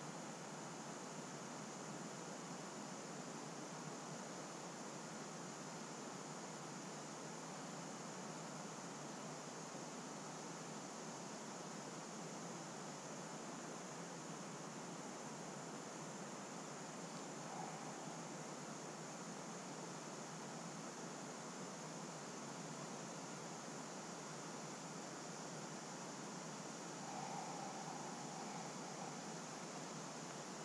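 Steady faint hiss of outdoor background noise, with two faint brief sounds about halfway through and near the end.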